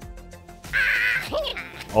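A recorded crow caw sound effect played back by the app's play sound command when its button is clicked, one harsh call of about half a second a little under a second in, over background music.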